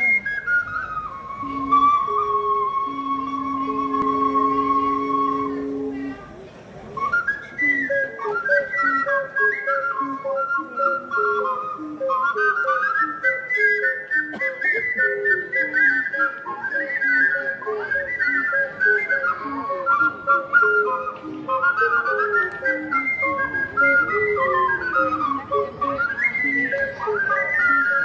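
Ocarina ensemble playing: it opens with a sustained chord of held notes, breaks off briefly, then moves into a quick tune in several parts over steady lower notes.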